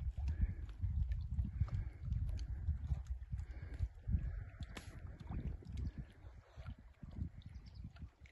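Wind buffeting the microphone: an uneven low rumble that rises and falls throughout, with a few faint clicks.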